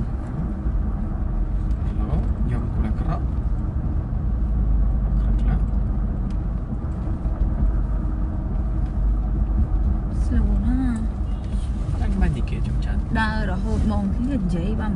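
Steady low rumble of a car on the move, heard from inside the cabin, with voices talking quietly in the second half.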